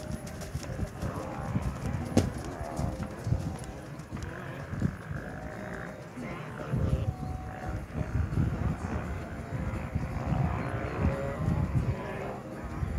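Hoofbeats of a horse cantering on a soft dirt arena, in repeated groups of low thuds, loudest near the start when the horse is close.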